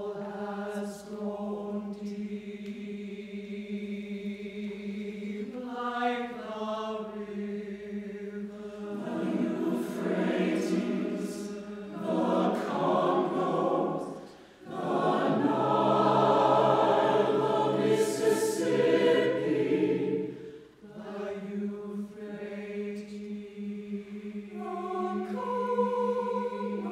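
Mixed choir of men's and women's voices singing a slow choral piece in overlapping, imitative parts, holding long chords. It swells to a loud climax through the middle, with two short breaths in it, then falls back to quieter held chords near the end.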